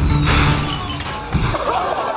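Movie sound effect of something launched out of a tube: a sudden loud blast, then a whistle falling in pitch over about a second, over loud low music.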